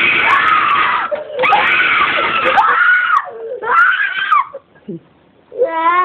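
Sudden loud screaming in fright at a jump-scare face on a computer screen: three long shrieks, then a short break and a child's wailing, sobbing 'oh, oh' cries near the end.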